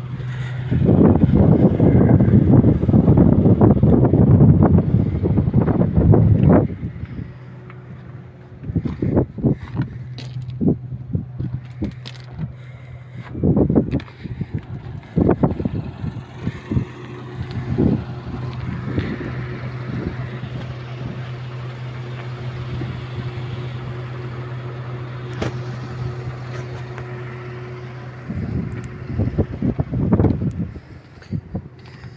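Wheel loader's diesel engine running steadily, with loud gusts of wind buffeting the microphone, strongest from about one to six seconds in and returning in shorter gusts later.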